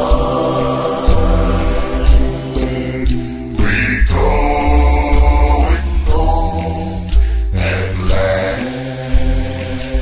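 A cappella gospel singing: several voices in harmony over a deep bass part, holding long chords that change every second or two, with no instruments.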